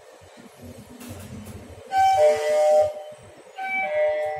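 Elevator chime: three falling electronic notes that ring together for about a second, sounding twice about a second and a half apart, marking the car's arrival at a floor.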